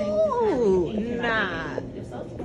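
A high voice hollering: one long held call that slides down in pitch during the first second, then a shorter rising call.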